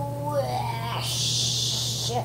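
A child's drawn-out, wavering strained moan while pushing, then about a second of breathy hiss near the end, over a steady low hum.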